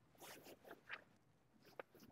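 Near silence: faint brief rustles during the first second and a soft click near the end.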